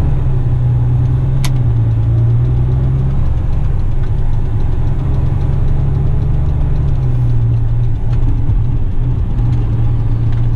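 Western Star truck's diesel engine heard from inside the cab while driving, a loud steady low drone that drops slightly in pitch about seven seconds in. A single sharp click comes about a second and a half in.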